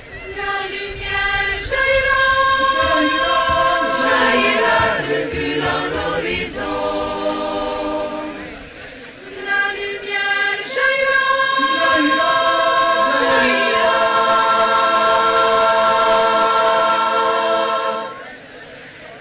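Choir singing in close harmony: two phrases with a short break between them, the second ending on a long held chord.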